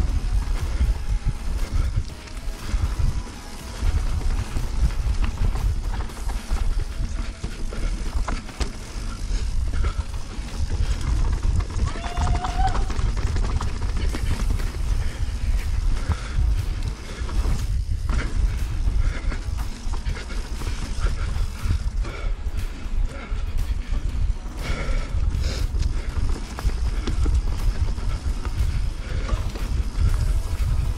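Continuous heavy low rumble of wind buffeting the camera, with tyre and frame rattle from a Yeti SB150 mountain bike descending a dirt trail at speed. A brief wavering tone sounds about twelve seconds in.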